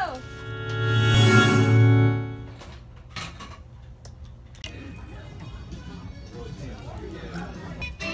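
Music played through a karaoke machine's speaker. A loud held chord over a low hum swells and fades in the first two and a half seconds or so, then quieter music and voices carry on.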